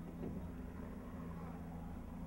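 Car engine idling, a steady low rumble with a constant hum.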